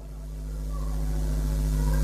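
A low, steady hum with several even overtones, slowly growing louder.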